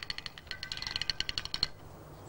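A fast run of sharp, high clicks, about fifteen a second, stopping shortly before the end.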